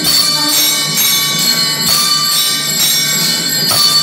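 Temple bells ringing continuously during a pooja, struck in a steady rhythm about every two-thirds of a second, with many high ringing tones layered over one another.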